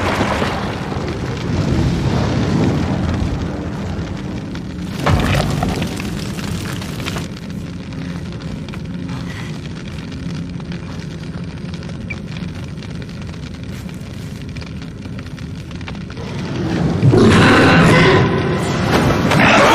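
Film soundtrack: a low, steady rumbling drone under tense music, with one sharp hit about five seconds in and a loud swell in the last second.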